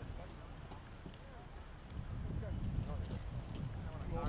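Faint, indistinct voices over a low rumble of wind on the microphone, with a few small clicks and short high chirps.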